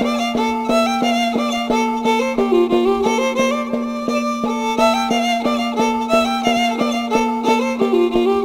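Andean Santiago music: a violin plays a lively melody over a steady beat on a tinya hand drum and a held low note.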